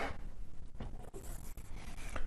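Hand-drawing strokes: an irregular scratchy rubbing of a writing tool on a writing surface, low in level, over a faint room hum.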